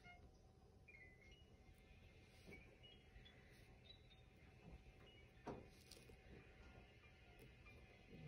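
Near silence: room tone, with one faint tap about five and a half seconds in.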